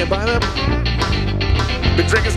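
Live rock band playing an instrumental break: an electric guitar lead with bending, sliding notes over a steady bass line and drums.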